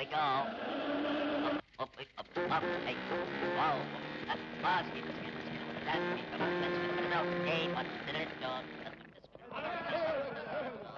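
Old cartoon soundtrack music with held orchestral chords and short swooping, sliding sounds over them. It breaks off briefly about two seconds in, then carries on.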